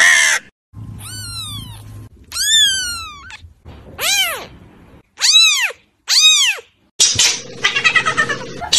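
Very young kittens mewing, five high-pitched cries in a row. The first two slide downward and the last three rise and fall. Near the end a rougher, noisier sound takes over.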